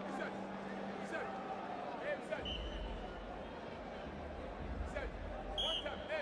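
Arena murmur of voices and crowd, with a short, loud referee's whistle blast near the end.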